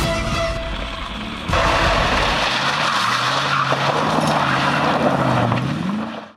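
Classic car driven hard round a cone course: engine running under load with loud tyre and road noise, the engine pitch rising near the end.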